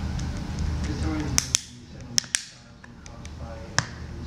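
JW Crackle Heads rubber dog ball crackling as a dog bites down on it: five sharp cracks, two close pairs between about one and a half and two and a half seconds in, and one more near the end.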